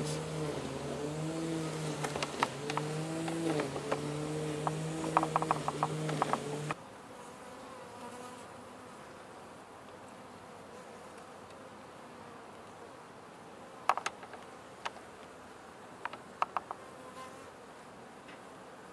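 Honeybees buzzing close to the microphone, a steady hum whose pitch wavers slightly; about seven seconds in it drops off suddenly to a faint hum. A few light clicks of wooden hive frames being handled come near the end.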